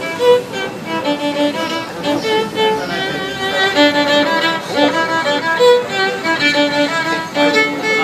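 Solo violin playing a melody of short, separate notes.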